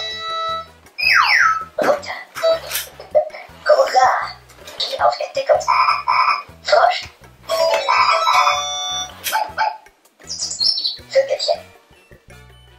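A VTech Baby toy steering wheel playing a quick run of electronic sounds through its small speaker as its buttons are pressed: short tunes, sliding whistle effects, chirps and brief voice clips.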